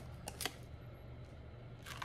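Faint clicks from handling a plastic Scentsy wax-bar clamshell, over quiet room tone, then a short inhale near the end as the bar is lifted to the nose.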